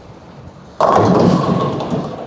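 Bowling ball hitting the pins about a second in: a sudden loud crash and clatter of pins that dies away over about a second.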